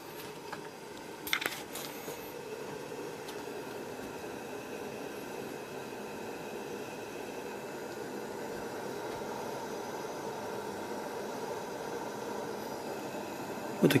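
Coleman 200A liquid-fuel pressure lantern burning with a steady hiss. A brief knock about a second and a half in.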